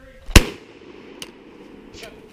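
A single .22 LR rifle shot about a third of a second in, fired up into the treetops, followed by a short echo; a faint click comes about a second later.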